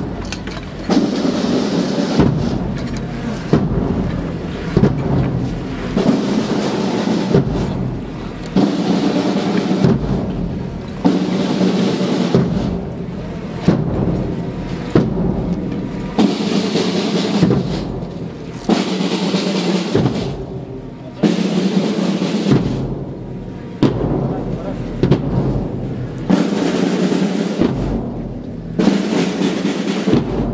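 Procession band playing a slow funeral march, with a heavy drum beat a little over a second apart under the band's sustained sound.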